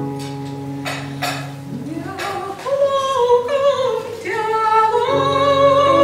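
Classical soprano singing with vibrato, accompanied by held chords on a Yamaha electronic keyboard. The keyboard plays alone at first, and the voice comes in about two and a half seconds in, pausing briefly near four seconds before going on.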